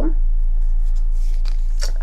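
Cardboard and paper handling as a CD album's digipak case is held and its paper insert pulled out: a few faint rustles and light clicks over a steady low electrical hum.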